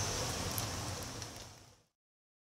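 Outdoor woodland ambience: a steady, even hiss with a low rumble underneath, fading away to silence shortly before the end.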